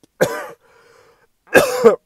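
A man coughs twice, about a second apart, the second cough louder.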